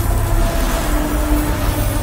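Intro sting for a channel logo: a loud, deep steady rumble with a few faint held tones above it, slowly fading.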